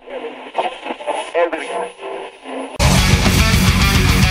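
A voice through a thin, radio-like filter for a little under three seconds, then a heavy metal band comes in suddenly at full loudness with distorted electric guitars and drums.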